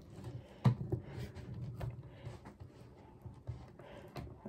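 Quiet, irregular light clicks and taps of a makeup mirror being handled as its flexible metal gooseneck arm is fitted to the mirror head.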